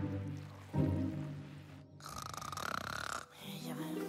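Soft cartoon score with two held chords, then about halfway through an animated bee character snoring for about a second.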